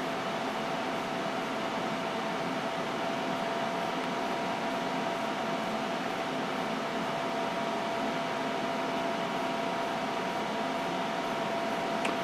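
Steady whir of computer cooling fans, with a few faint steady tones in it, while the motherboard's BIOS is being flashed.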